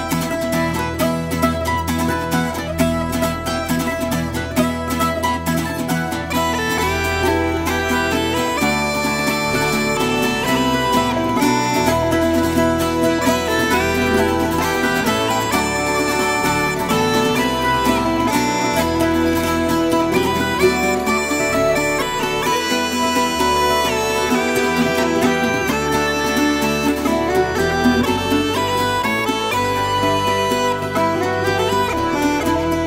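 Irish folk instrumental music: plucked string instruments strumming and picking a steady accompaniment under a sustained, reedy wind-instrument melody, with no singing.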